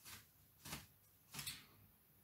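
African grey parrot flapping its wings in its cage: three short whooshing bursts of wingbeats, one at the start, one just before the middle and one about a second and a half in.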